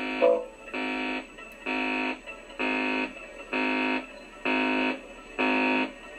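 Distorted electric guitar repeating one held, buzzy note or chord in an even pulse about once a second, each lasting about half a second, with no drums.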